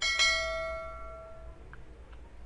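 Bell-chime sound effect that plays with the animated subscribe-button overlay. It is struck twice in quick succession and rings out, fading over about a second and a half.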